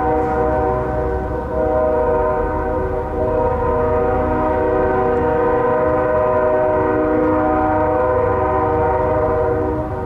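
A loud horn sounding one long, steady chord of several notes, held through the whole stretch, over a low rumble.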